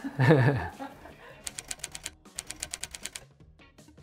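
A man's short laugh, then a typing sound effect: a quick run of sharp keystroke clicks, about eight a second, in two bursts with a short break between them, starting about a second and a half in.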